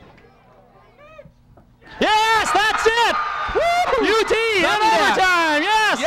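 Excited yelling and whooping close to the microphone. It breaks out suddenly about two seconds in, after a quiet spell, and continues loud: cheering as the penalty kick is scored.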